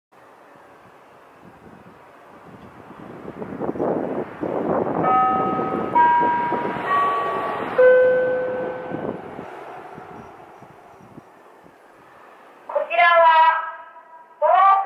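Four-note chime from a municipal disaster-prevention radio loudspeaker, each note held about a second, marking the start of a public broadcast. A rushing noise rises under the chime and stops shortly after it, and near the end a voice begins speaking through the loudspeakers.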